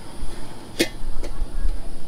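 Metal lid of a stainless steel stockpot clinking sharply once as it is lifted off the pot, then a fainter second clink about half a second later, over a low steady rumble.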